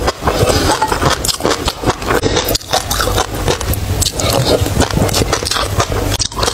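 Close-miked eating sounds: wet chewing and mouth noises made up of many small crackles and clicks. A metal spoon scrapes the glass bowl.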